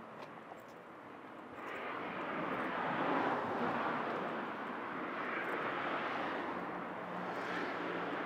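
Cars driving past close by on the road, one after another: tyre and engine noise on asphalt that rises about a second and a half in and stays loud, swelling as each car goes by.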